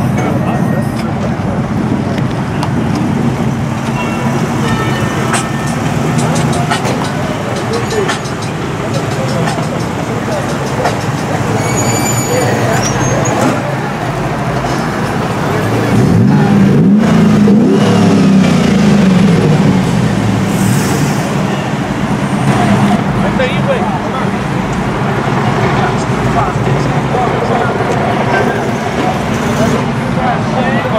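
Car engines running, with an engine revving up and down for a few seconds about sixteen seconds in, under people talking in the background.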